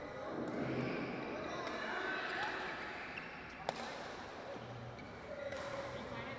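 Badminton rally: a few sharp racket hits on a shuttlecock, about two seconds apart, the loudest just past halfway, over indistinct voices.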